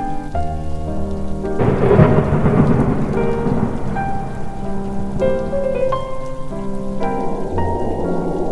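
A thunderclap about a second and a half in, rumbling away over the next couple of seconds, with steady rain, over music of long held notes.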